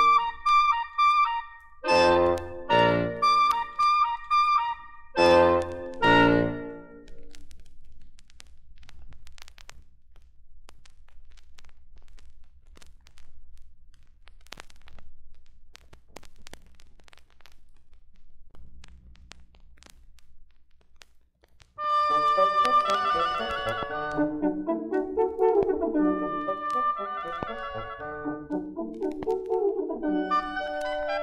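A wind ensemble of oboes, horns and bassoon on a vinyl LP plays a few separated closing chords that end about seven seconds in. Then come about fifteen seconds of faint record-surface crackle in the gap between tracks. Near the end, oboes, clarinets and bassoon start the next piece together.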